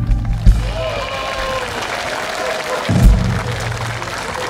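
Audience applauding at the end of a song, with two low thumps, about half a second in and about three seconds in.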